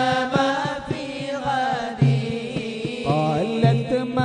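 Moulid recitation: Arabic devotional verses in praise of the Prophet, chanted melodically on long held notes over a steady percussive beat.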